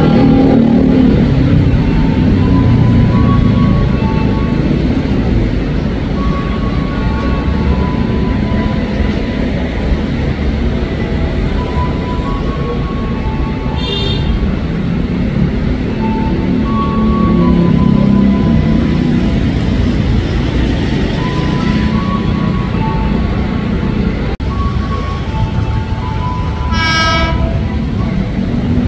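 Freight train wagons running on the rails: a steady low rumble with scattered short high squeals. A train horn sounds briefly near the end.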